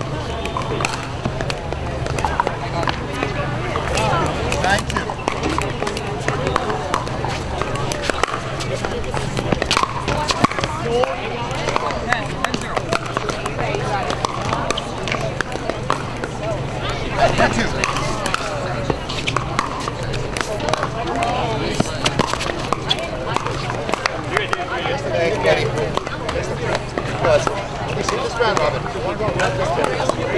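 Voices of people talking around outdoor pickleball courts, with scattered sharp pops of paddles hitting plastic pickleballs on the courts. A steady low hum runs underneath.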